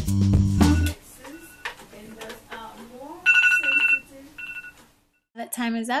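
Background music stops about a second in; then a phone timer alarm beeps with a steady high tone, one long beep and a short one after it, over faint talk. A woman's voice starts near the end.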